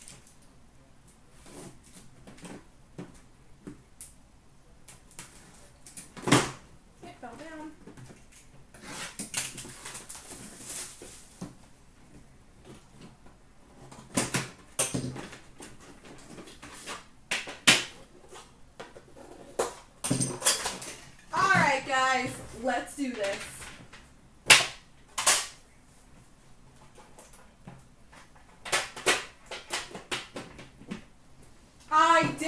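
Metal hockey card tins being handled and opened on a glass counter: scattered sharp clicks and knocks of tin and lid, with a stretch of rustling wrapper about ten seconds in.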